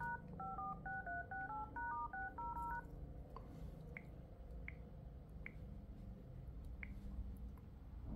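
Dialer keypad tones (DTMF) from an LG V60 smartphone as a service code starting with *# is typed: about a dozen quick two-tone beeps in the first three seconds, then a few faint ticks.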